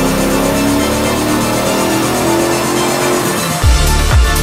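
Electronic music with a rising sweep, then a heavy bass beat comes in near the end.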